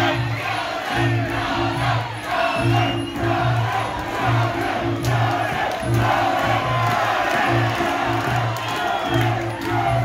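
Crowd shouting and cheering over loud music with a steady, pulsing beat.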